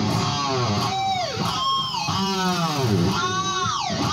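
Cort X-series electric guitar played through an amplifier: sustained notes that swoop up and down in pitch, one after another, with a few sharp downward dives.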